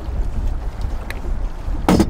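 Steady low rumble of wind on the microphone around a drifting boat, with a sharp knock near the end as the fish is handled in the landing net against the boat.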